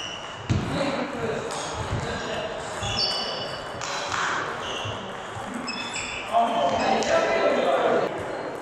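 Table tennis rally: the celluloid ball clicking off bats and table about twice a second, with short high squeaks, in a reverberant sports hall. Voices rise near the end as the point finishes.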